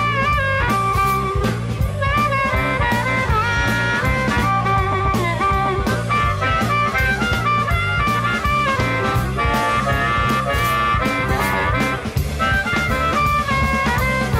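Blues-rock song with gliding slide guitar lines over a steady drum beat and bass.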